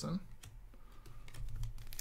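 Light, scattered clicks of hockey trading cards being handled and slid against each other between the fingers, over a low steady hum.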